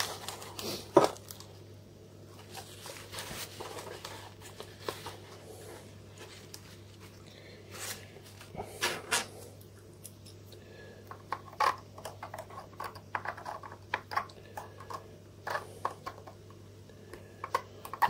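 Scattered small clicks, taps and scrapes as a plastic camera body is handled and a small metal pick prods at corroded batteries stuck in its vinegar-soaked battery compartment, over a steady low hum.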